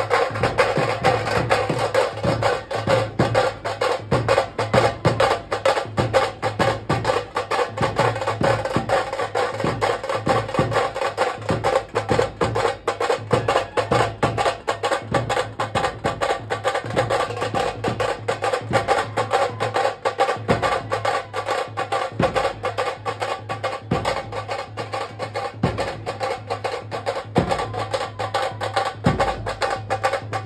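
Maharashtrian procession band playing loud, fast, dense stick-beaten drumming, with a melody line held steadily over the drums.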